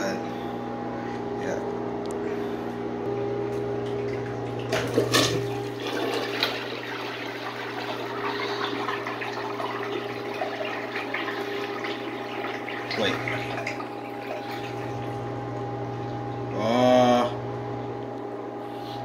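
Miniature model toilet flushing from a plastic-bottle tank: water rushes into the bowl and swirls down, drawing a wad of paper towel into the drain. It is a weak flush that its maker expects may clog for lack of power, with a few knocks about five seconds in and a short gurgling sound near the end.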